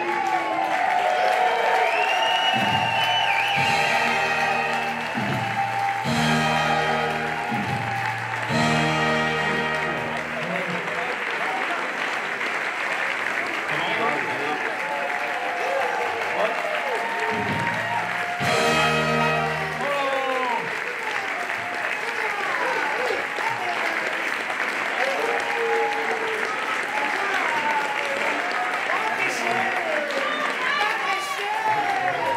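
Audience applauding and cheering during a curtain call, over music with heavy bass chords in the first third and again briefly about two-thirds through.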